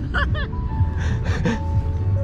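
A woman laughing, twice briefly, over steady background music.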